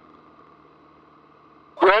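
Faint, steady drone of a light single-engine airplane in flight, its engine and propeller heard through the headset intercom; a man says "Right" near the end.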